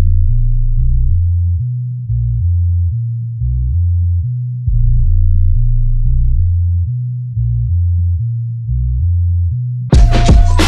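Bass-only breakdown of a hip-hop instrumental: deep synth bass notes step slowly between a few pitches, each swelling and then fading, with no drums or other instruments.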